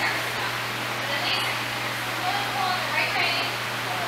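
Indistinct, distant voices, with a steady low hum underneath.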